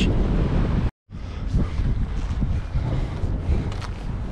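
Wind buffeting the microphone, a rough low rumble with no steady tone, cut off completely for a moment about a second in.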